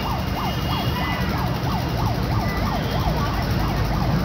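An electronic siren yelping, its pitch sweeping rapidly up and down about four to five times a second, over the low rumble of an approaching WDM-3A diesel locomotive.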